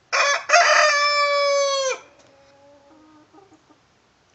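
Rooster crowing once, about two seconds long: a short first note, then a long held note that drops off sharply at the end. Fainter, lower calls follow.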